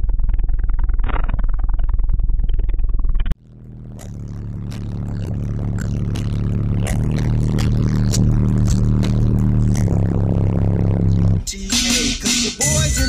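Bass-heavy electronic music played loud through a pair of Sundown ZV4 12-inch subwoofers, with very deep bass dominating. About three seconds in the sound cuts out and fades back up with sustained low bass notes. It switches to a hip-hop track just before the end.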